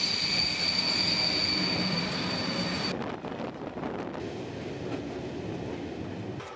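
A railway train squealing: a high, steady squeal over rolling noise for about three seconds, which cuts off suddenly and leaves a softer rumble.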